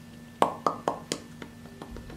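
Lips smacking together, a row of about five sharp pops roughly a quarter second apart that grow fainter, as freshly applied liquid lip paint is pressed in.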